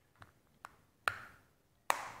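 Plastic back cover of a smartwatch pressed and snapped onto the case: four small clicks, the last two the loudest.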